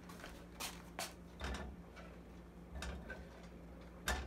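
Faint, scattered clicks and knocks of chopped sweet potato and kitchenware being handled on a wooden cutting board and at the stove, over a low steady hum.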